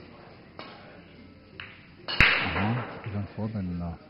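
Pool shot: a sharp click of the cue tip striking the cue ball about halfway through, followed by the balls running and colliding on the table.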